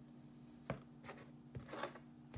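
Tarot cards being shuffled and handled: one sharp click a little under a second in, then a short cluster of soft rustles near the end, over a faint steady hum.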